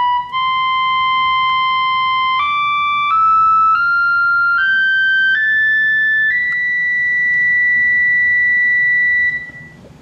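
Solovox, a 1940s Hammond tube keyboard instrument, playing single sustained notes that step up a scale about an octave, in a smooth, nearly pure tone. The top note is held about three seconds, then stops shortly before the end.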